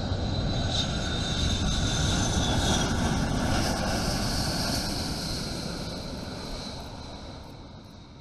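Rockwell B-1B Lancer's four General Electric F101 turbofan engines running at takeoff power as the bomber lifts off and climbs away. A deep rumble sits under a high whine that slides slightly down in pitch. It is loudest a couple of seconds in and fades steadily through the second half.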